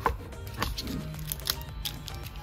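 Thin plastic pot of a Likit granola treat crackling and clicking a few times as it is squeezed by hand to loosen the pressed granola block inside, over quiet background music.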